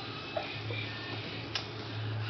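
Young puppies lapping and smacking at mashed puppy porridge: a few scattered wet clicks, the sharpest about a third of a second in and again about one and a half seconds in.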